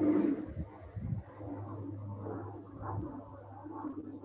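A person's slow exhale during a qigong breathing movement, faint and breathy, over a steady low hum that stops about three seconds in.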